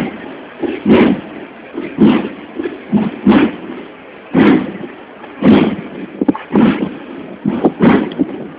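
A processional drum beaten in a slow, steady march rhythm, with a heavy stroke about once a second and lighter strokes between.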